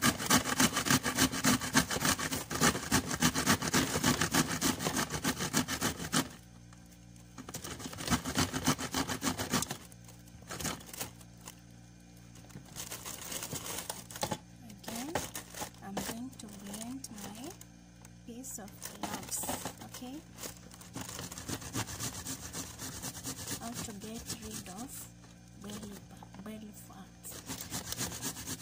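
Food being grated by hand on a kitchen grater: fast rasping strokes for the first six seconds and again briefly around eight seconds, then only scattered light knocks and scrapes.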